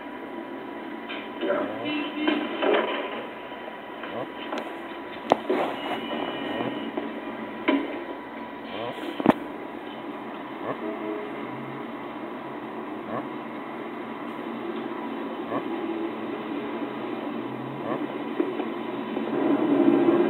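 A film's soundtrack heard from a television speaker: faint muffled voices in the first few seconds, a few sharp knocks, and a steady hum with a thin steady tone under it, growing louder near the end.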